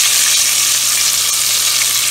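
Flour-coated chicken wings deep-frying in hot oil in a stainless steel pot: a loud, steady sizzle as a fork turns the pieces in the oil.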